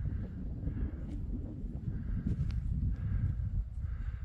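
Footsteps on moorland grass at a walking pace, with a low, uneven rumble of wind on the microphone.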